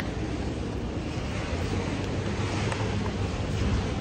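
Steady rain falling, an even hiss with no distinct events.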